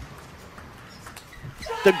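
Faint hall ambience of a table tennis arena between points, with a few soft clicks; a man's commentary begins near the end.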